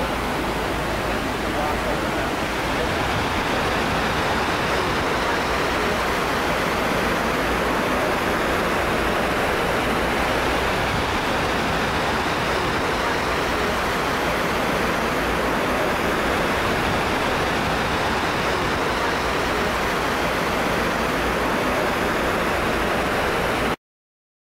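Steady rush of falling water, with a crowd murmuring under it.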